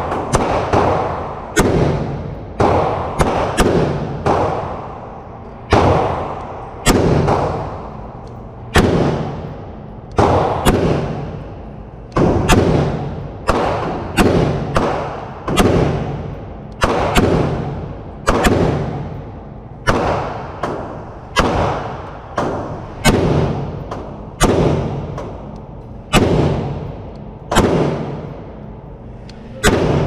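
A 7.5-inch short-barrelled rifle fitted with a muzzle brake fires about three dozen single shots at an uneven pace of one to two a second, each sharp crack echoing off the walls of an indoor range.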